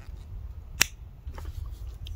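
Okapi biltong folding knife's blade snapping shut with a single sharp click about a second in. The closing blade strikes the pin through the handle, a sign of the knife's poor workmanship.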